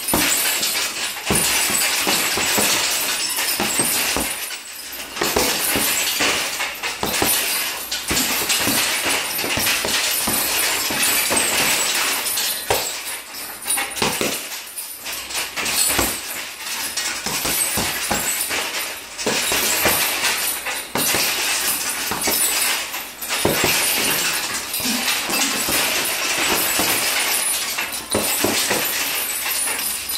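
Repeated punches thudding into a hanging heavy bag, with the bag's mounting chain jingling and rattling as it swings.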